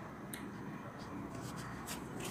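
Faint scratching of pen on ruled notebook paper: a few short writing strokes and an underline.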